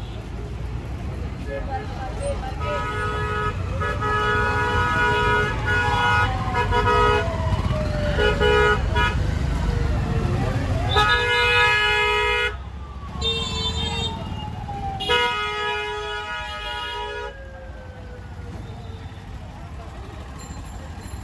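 Motor vehicle horns honking in busy street traffic: a run of long blasts with short breaks for about ten seconds, then two more shorter honks, over a steady low rumble of engines. A separate tone slowly falls in pitch under the honking.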